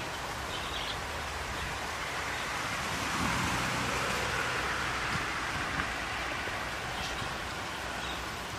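Steady outdoor background noise, an even hiss that swells a little around the middle.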